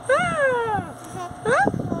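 Baby's high-pitched squeals: one call rising and then sliding down over nearly a second, then a second, quick rising squeal about one and a half seconds in.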